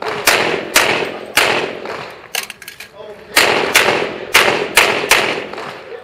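Pistol shots fired in rapid strings, each crack followed by a short echo. Three shots come about half a second apart, then a pause of about two seconds with faint ticks, then about five more shots in quick succession.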